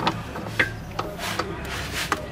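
Rubber vacuum hose and its fittings at the brake servo being handled and pushed into place, with several short clicks and knocks over a low steady hum.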